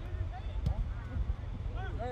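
Shouts from players on a soccer field: short, overlapping raised calls heard from a distance, over a steady low rumble, with one sharp knock about two-thirds of a second in.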